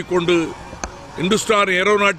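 A man speaking in Tamil, with a pause of under a second in the middle that holds a single brief click.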